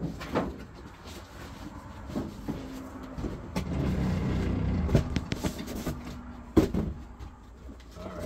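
A heavy cardboard box of books being lifted, shifted and set down, with cardboard scraping and knocks; the sharpest knock comes about two-thirds of the way through. A steady low rumble runs through the middle.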